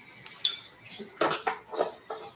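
Metal clinks and knocks from a stand mixer's stainless steel bowl being handled: one sharp click about half a second in, then three or four short knocks in the second half.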